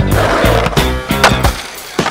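Skateboard on concrete, a sharp clack of the board at the start followed by wheel and board noise, heard over a hip-hop track with a steady beat.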